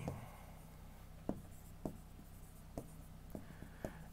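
Faint taps and light scratching of a stylus writing on a touchscreen display, about five soft ticks spread over a few seconds, over a low steady hum.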